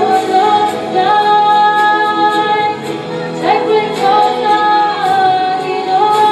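A woman singing long held notes over musical accompaniment, her voice sliding from one note to the next several times.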